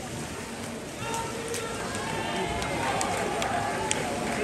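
Swimming pool hall ambience: water splashing from swimmers finishing a race, under a murmur of spectators' voices that grows from about a second in, with a few small clicks near the end.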